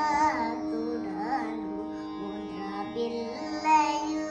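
A young girl singing a melody, her voice bending up and down over a steady drone held underneath.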